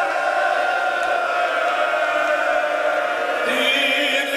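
A man's voice chanting a slow, melodic recitation, drawing out long held notes; a new, brighter phrase begins near the end.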